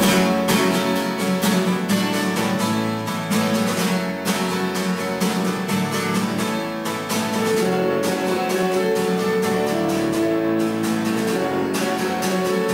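Acoustic guitar strumming chords at a steady pace, the music starting suddenly at the outset.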